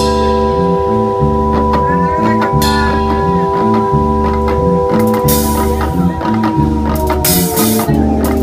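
Live reggae/dub band playing an instrumental passage: a pulsing bass line and drum kit under a long-held keyboard chord, with electric guitars and cymbal washes about five and seven seconds in.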